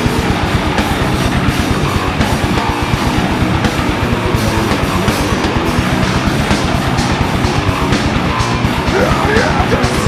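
A live band playing loud, heavy rock music on electric guitar, bass guitar and drum kit, with a rapid, dense run of drum hits. A wavering, bending high line comes in about nine seconds in.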